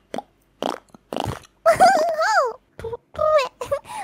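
Lip-popping beatbox sounds made with the mouth: a series of short, sharp pops, with a few pitched, wavering vocal sounds in between.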